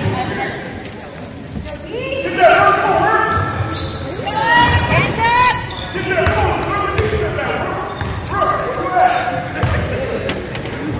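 Basketball dribbled on a hardwood gym floor, with sneakers squeaking and players and spectators calling out, echoing around the large gym.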